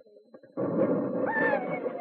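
Radio-drama battle sound effect of machine-gun fire on an infiltration course. It starts as a dense, continuous rattle about half a second in, with a brief whine that rises and falls partway through.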